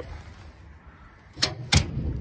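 Two sharp knocks about a third of a second apart, about one and a half seconds in, after a quiet stretch.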